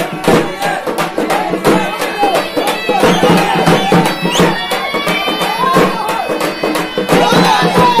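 Loud traditional festival music: fast, dense frame-drum beating under sustained steady tones, with a crowd's voices shouting over it.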